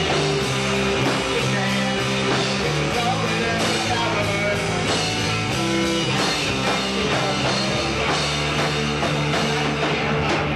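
Live rock band playing loudly.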